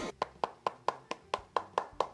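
A rapid, even series of sharp ticks, about four to five a second, each dying away quickly.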